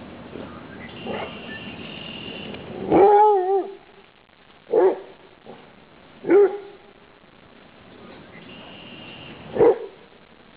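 Basset hound barking: one longer, wavering bark about three seconds in, then three short single barks spaced a second or more apart.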